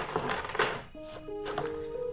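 A few sharp clinks and clatters of small hard objects being handled on a desk, then soft background music with slow held notes comes in about a second in.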